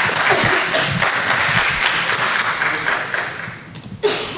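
Audience applauding, fading away near the end.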